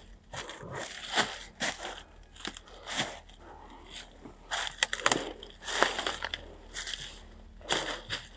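Footsteps crunching through dry fallen leaves on a steep forest path at a walking pace, the steps coming irregularly about one or two a second.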